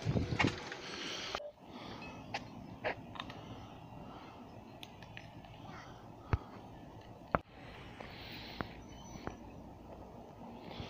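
Quiet outdoor background with scattered sharp clicks and taps; a brief stretch of voice-like noise at the start cuts off suddenly about a second and a half in.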